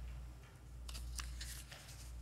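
Faint rustling and light ticks of book pages being handled and turned at a lectern, starting about halfway through, over a steady low hum.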